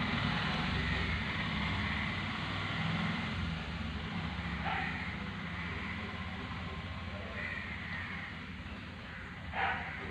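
Steady low outdoor background rumble with a light hiss, fading slightly, with a few brief faint sounds about halfway through and near the end.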